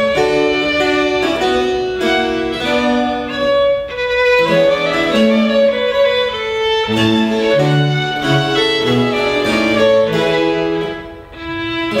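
A Baroque trio of violin, cello and harpsichord playing a sonata movement, with the violin's melody over a moving cello bass line. There is a brief lull near the end before the playing resumes.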